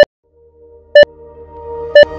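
Workout interval timer beeping three times, a second apart, counting down the last seconds of a rest break. Music fades in and grows louder underneath.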